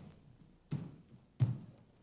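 Two dull thuds on padded floor mats, about 0.7 s apart, as a child tumbler's hands and feet land during a round-off into a back handspring.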